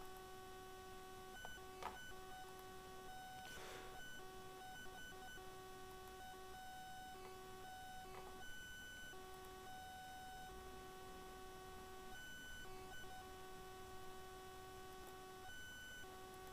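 Near silence with a faint electronic tone, several pitches together, that keeps cutting out and coming back in short stretches, and a few faint soft sounds.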